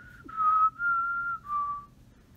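A woman whistling a short tune through pursed lips: a few held notes, the last one the lowest.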